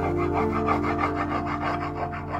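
A smooth stone rubbed back and forth under hand pressure over a pigment-and-lime coated oak surface, burnishing it, in quick repeated scraping strokes. Background music with long held notes plays underneath.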